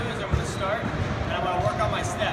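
A man speaking, mid-explanation, with a few dull low thumps underneath.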